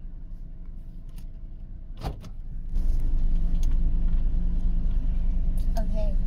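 Inside a stationary car's cabin: a steady low rumble and hum of the car, two sharp clicks about two seconds in, then the rumble suddenly grows much louder just under three seconds in and holds steady.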